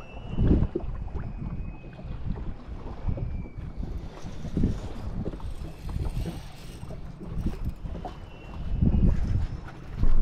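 Gusts of wind buffeting the microphone on an open boat, coming in uneven surges, with a faint thin high whine now and then.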